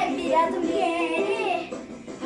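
A children's action song: a child's singing voice over light music.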